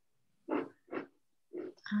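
A person's voice on a video call: three short muffled vocal sounds, each a fraction of a second, then the start of a hummed "um" near the end.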